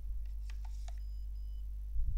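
A magnetic card swiped through a small card reader: a short, faint scratchy run of clicks about half a second in, then a faint brief high beep heard twice, over a steady low electrical hum.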